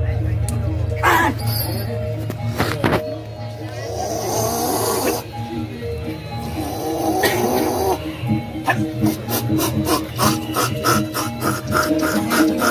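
Live jaranan gamelan music with steady held tones, with voices over it in the middle. About two-thirds of the way through, fast, evenly spaced drumbeats come in.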